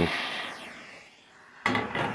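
Propane hand torch flame hissing and dying away over about a second, then a sudden knock and clatter near the end as the torch on its propane cylinder is handled and lifted off the steel disc.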